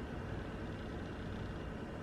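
Faint steady low hum and hiss of room tone, with no distinct sounds.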